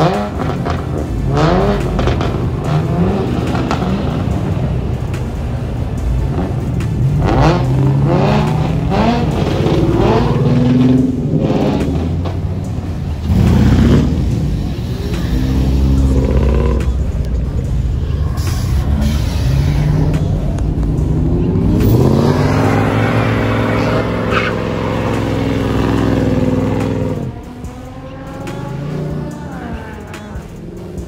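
Muscle-car engines revving hard as cars pull out, in a string of rising revs one after another. Near the end one engine is held at high revs for several seconds, then it drops off.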